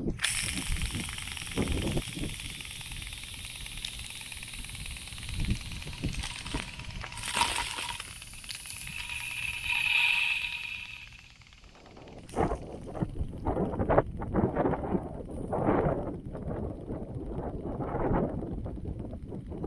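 Netafim MegaNet impact sprinkler spraying water: a steady hiss of spray, with water spattering onto the camera close up. After about twelve seconds it gives way to wind rumbling on the microphone with scattered knocks.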